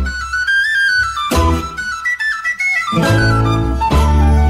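A folk-style song playing: a high woodwind melody, flute-like, moving in small steps over deep drum beats.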